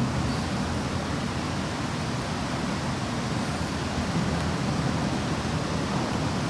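A steady, even hiss of background noise in a pause with no speech.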